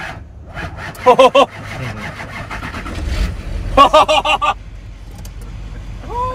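Men laughing loudly in two bursts, a short one about a second in and a longer run of rapid 'ha-ha' pulses near the middle, over the low, steady idle of the truck's engine in the cabin.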